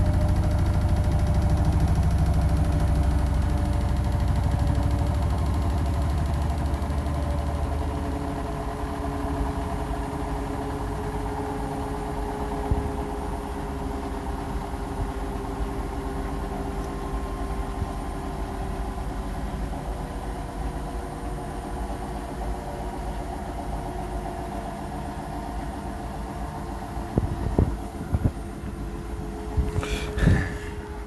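Hotpoint NSWR843C washing machine's drum winding down at the end of a 1000 rpm final spin: a deep rumble fades out about eight seconds in, and the motor whine slowly falls in pitch as the machine gets quieter. A few sharp clicks near the end.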